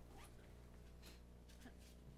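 Near silence: room tone with a steady low hum and a few faint short noises.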